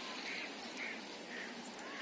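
A bird calling repeatedly, about twice a second, over a faint steady outdoor hiss.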